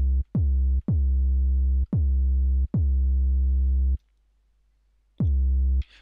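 Synthesized kick drum from NI Massive, a sine wave with a touch of square, played about six times. Each hit opens with a fast downward pitch drop set by a pitch envelope and settles into a steady low tone near 60–70 Hz that holds while the key is down, because the amp envelope still has its sustain on. There is a second-long silence about four seconds in.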